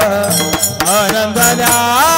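Varkari kirtan devotional singing: one voice sings a wavering, ornamented melody over steady held low notes and repeated percussion strokes.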